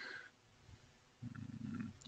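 A faint low hum from a person, like a thoughtful "mmm", starting a little past halfway and lasting just under a second. It is preceded by a brief soft click or breath at the very start.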